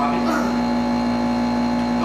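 A loud, steady hum at one unchanging pitch, with a brief bit of voice near the start.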